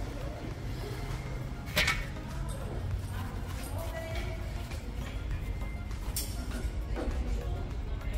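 Background music over steady workshop hum, with a few sharp metallic clinks from a wrench on an extension bar loosening a differential drain plug. The loudest clink comes about two seconds in, and a couple more follow near the end.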